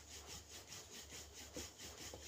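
Wooden rolling pin rolling dough on a floured round wooden board: a faint, evenly repeated back-and-forth rubbing of wood over dough.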